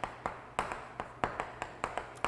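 Chalk writing on a chalkboard: a quick run of sharp ticks, about four a second, as each stroke knocks against the board.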